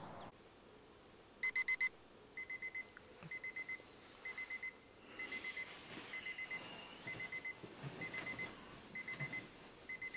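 Electronic alarm clock beeping in quick groups of four, about one group a second. The first group is the loudest, and the rest repeat evenly and more softly, going off to wake a sleeper.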